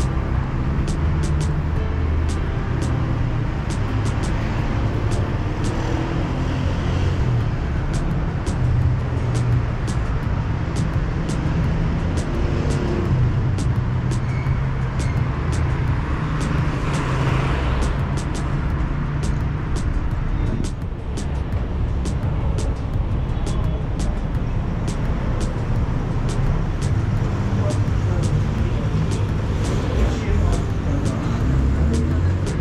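Steady city street traffic with cars running past, one louder pass about halfway through. Over it, a walker's footsteps tap on the pavement at about two steps a second.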